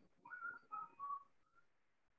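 Faint, short whistle-like chirps: four or five brief notes over about a second and a half, stepping up and down in pitch.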